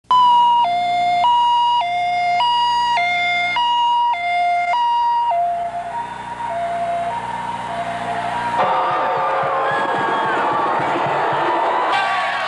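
Two-tone hi-lo siren, switching between a high and a low pitch about every 0.6 seconds, fading out after about five seconds. About two-thirds of the way in the sound cuts to a large crowd cheering and shouting.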